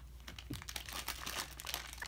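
Foil blind-bag packet crinkling in quick, irregular crackles as it is opened and handled, with a small plastic inner bag being drawn out of it.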